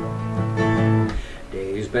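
Acoustic guitar strummed, its chords ringing through a short intro. A man's singing voice comes in near the end.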